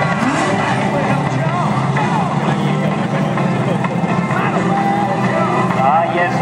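Several motorcycle-engined dwarf race cars running in a pack around a dirt speedway oval, a steady engine drone with pitch rising and falling as they accelerate and back off. Voices carry over the engines.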